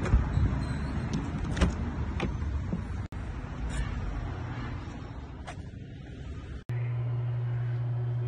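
Low noise of a car and parking garage picked up by a handheld phone, with a few sharp knocks from the phone being handled. About seven seconds in it cuts to a steady low hum.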